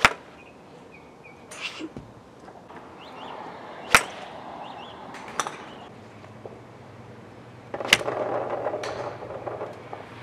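Sharp clicks of a golf club striking balls off a driving-range mat: loud strikes at the start, about four seconds in and about eight seconds in, with fainter clicks between. A rush of noise lasting about two seconds follows the last strike.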